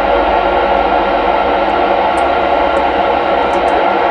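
FM radio transceiver's speaker giving a steady, loud hiss of receiver static, open squelch on the SO-50 amateur satellite downlink with no station coming through. It cuts off abruptly right at the end.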